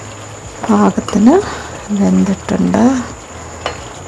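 A woman speaking a few short phrases, over the quieter sound of a steel ladle stirring a thick curry in a pan.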